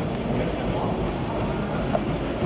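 Treadmill running while someone walks on it: a steady low rumble of the motor and belt, amid gym background noise.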